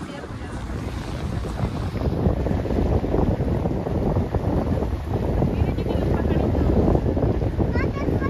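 Wind buffeting the microphone on the open deck of a moving passenger ferry, over the rush of the boat's engine and water. The rumble builds over the first couple of seconds, then holds steady.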